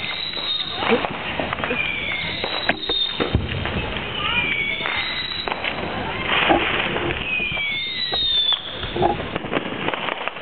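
Fireworks going off around the neighbourhood: several whistling fireworks, each a whistle gliding down in pitch and one rising near the end, among scattered sharp bangs and pops.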